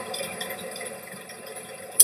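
A pause in speech: only a faint, steady background hiss of room noise.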